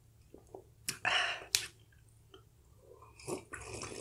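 Close-up mouth sounds of eating: chewing with a couple of sharp wet clicks about a second in, then slurping sips from a mug near the end.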